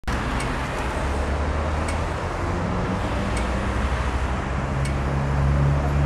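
Steady road traffic noise with a low hum, and faint ticks about every second and a half.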